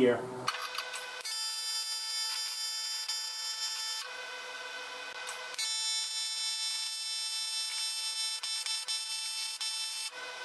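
AC TIG welding arc on thin aluminium, a steady high electrical buzz. It stops for about a second and a half midway, then strikes again and runs on.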